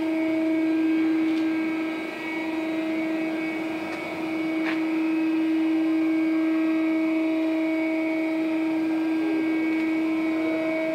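Steady machinery hum in a machine shop: one strong mid pitch with fainter overtones, unchanging throughout, with a faint click a little under five seconds in.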